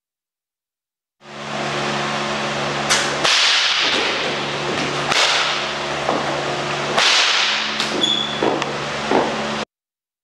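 Fight-rehearsal movement: several sharp smacks and swishes over a steady low hum. The sound starts about a second in and cuts off suddenly near the end.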